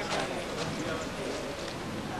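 Indistinct voices of people talking, with scattered light clicks.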